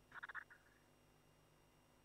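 Near silence: room tone, with one brief faint sound of a few quick pulses near the start.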